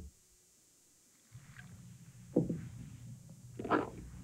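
About a second of dead silence, then a faint low steady hum. Over the hum there is a short falling sound, then two brief crunches near the end: the crunching noise at the centre of the Nut & Honey Crunch cereal ad.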